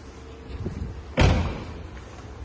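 Front door of a Great Wall Hover H5 being shut, closing with one solid slam about a second in.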